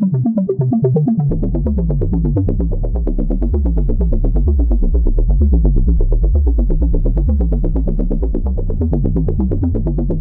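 Serum software synthesizer playing a randomly generated techno bassline: a fast run of short bass notes, with the deep low end coming in about a second in.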